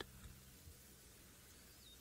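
Near silence: faint outdoor background, with a few faint high chirps near the end.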